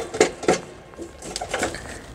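Light clinks and knocks of a metal battery shield being shifted into place in a golf cart's battery compartment: a few scattered taps, the loudest near the start.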